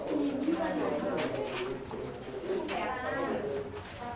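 Indistinct voices of people talking, with no clear words.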